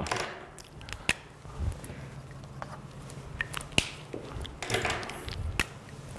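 Scattered small clicks and clatters of whiteboard markers being picked through and their caps handled, in search of one that still writes, over a steady low room hum. A short scratchy stretch near the end is a marker being tried on the whiteboard.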